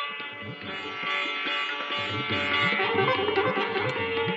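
Sitar playing a melodic passage in raga Bhairavi, in a live concert recording, with low gliding strokes underneath from about two seconds in.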